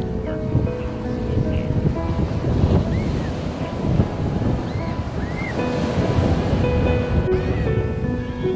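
Ocean surf breaking and washing up a sandy beach in a steady rush, with wind on the microphone, under soft background music.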